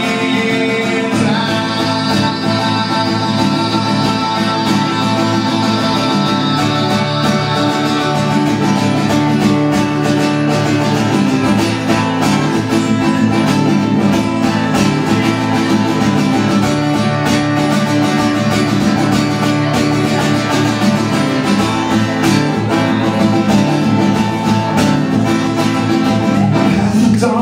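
Takamine cutaway acoustic guitar strummed steadily in a live solo performance.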